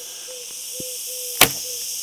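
A single sharp crack about one and a half seconds in, a shot from a laminated Mongolian Yuan-style recurve bow as the string is released, over a steady high hiss.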